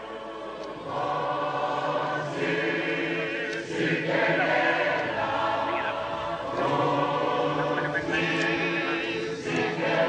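A choir of many voices singing a slow song in long held phrases.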